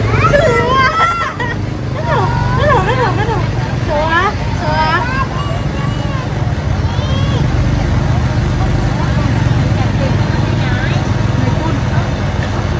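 Busy market background: voices and chatter over a steady low hum and the continuous splashing of a water jet churning a metal basin. The voices thin out about halfway through.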